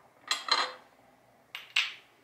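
Glass tincture bottles and measuring vessels clinking and knocking as they are handled and set down, in two quick pairs about a second apart.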